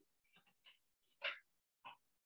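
Near silence, broken by three faint, brief sounds: one about half a second in, a louder one a little past a second in, and one near the end.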